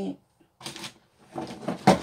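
Objects being handled and shifted: rustling and clattering, with a sharp knock near the end.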